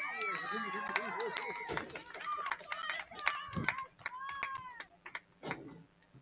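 Several voices calling and shouting across a soccer field during play, with scattered sharp clicks and knocks among them.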